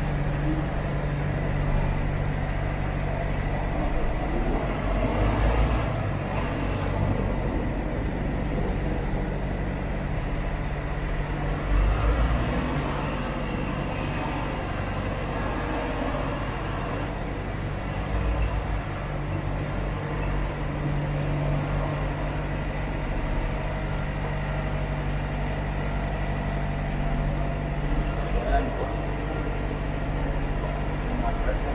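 Semi truck's diesel engine running at low speed as the truck creeps forward, a steady low hum heard from inside the cab, with a few brief louder bumps along the way.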